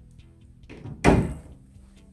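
A door thuds shut once, about a second in, with a short scrape just before it. Quiet background music plays underneath.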